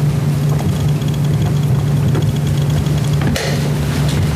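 A loud, steady low hum, with a faint rapid high-pitched ticking through the middle and a single sharp click about three seconds in.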